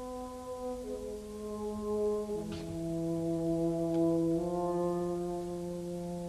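French horn playing a slow, held melody: three long notes, each lower than the last, the third sustained through the second half.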